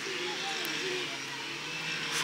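Faint voices over a steady low background hum.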